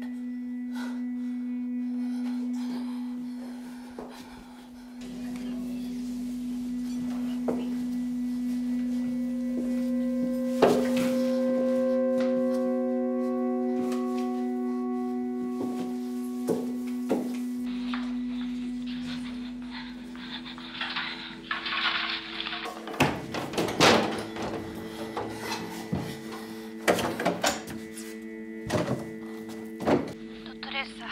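Tense film score: a low held drone throughout, with higher sustained tones swelling in over the middle. From about two-thirds through comes a busier stretch of sharp thuds and clatter over several held tones.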